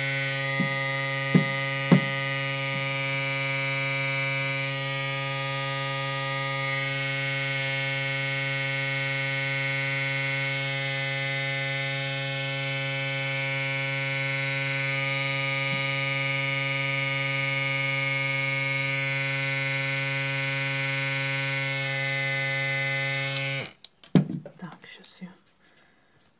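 Small airbrush compressor running with a steady hum while the airbrush sprays with an airy hiss, with a couple of small clicks early in the spraying. The compressor cuts off suddenly shortly before the end, followed by a few knocks of handling.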